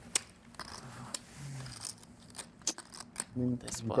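Poker chips clicking against each other in a run of sharp, irregular clicks, as they are handled at the table.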